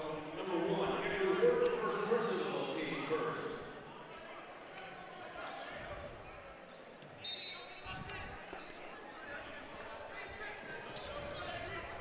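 Basketball gym ambience: crowd voices louder for the first few seconds, then a basketball bouncing on the court, with a short high squeak about seven seconds in.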